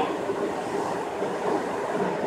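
Steady rolling noise of a Toei 5300-series subway car running between stations, heard from inside the car with the doors shut.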